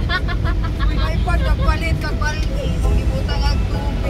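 Steady low road and engine rumble inside a moving car's cabin, with a person's voice going on over it.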